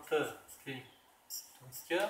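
Felt-tip marker writing on a whiteboard in short, high-pitched squeaky strokes, with a man's voice speaking in short bits between them.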